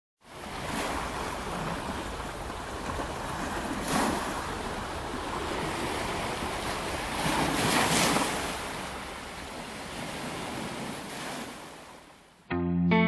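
Sea waves washing in on a beach. The surf swells about four seconds in and again around eight seconds, then dies away.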